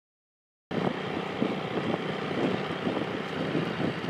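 Dead silence, then about a second in a sudden cut to steady outdoor noise, with wind blowing on the microphone.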